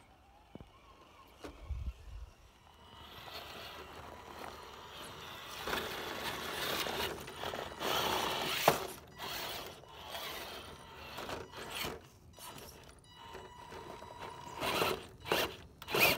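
HPI Venture RC rock crawler's electric drivetrain whirring in uneven spurts as it climbs a rock slab, with its tyres scraping and clicking on the rock. The sound starts about three seconds in, after a quiet opening.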